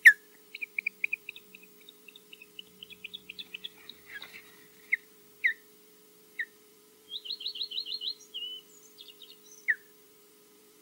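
Osprey giving alarm calls while defending its nest against a passing intruder: loud, sharp, down-slurred whistles at the start, around five and six seconds in, and near the end, between runs of softer quick chirps and a fast trill of about eight notes around seven seconds in.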